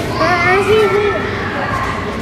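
A young child's voice: one drawn-out, high, wavering vocal sound lasting about a second, over steady background noise.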